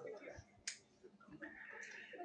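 A single short, sharp click about two-thirds of a second in, over a faint murmur of low voices in a quiet room.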